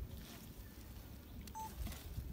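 Two Komodo dragons tearing at a goat carcass: faint scuffing and pulling sounds over a low rumble, with one brief high tone about one and a half seconds in.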